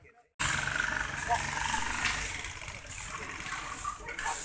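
Outdoor street ambience that cuts in abruptly after half a second of silence: a vehicle engine running with a low steady hum that drops away about two seconds in, under a general wash of background voices and street noise.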